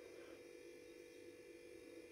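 Near silence: a faint, steady low hum of room tone or recording noise.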